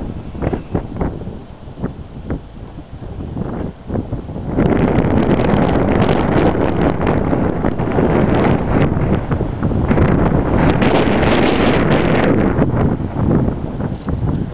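Wind buffeting the microphone: light rustles and knocks at first, then a loud, dense rushing that sets in about four and a half seconds in.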